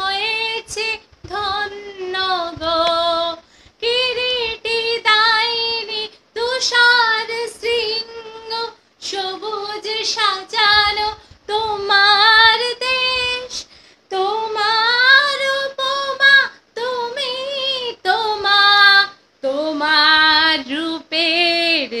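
A woman singing a Bengali patriotic song unaccompanied, in phrases of held, wavering notes, with short breaths between them.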